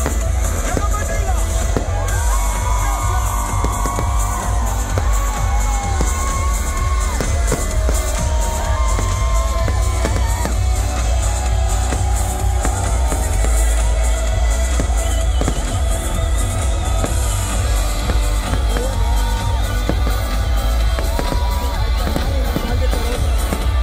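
Aerial fireworks bursting with repeated sharp pops and bangs over loud concert music with heavy bass, and crowd voices cheering.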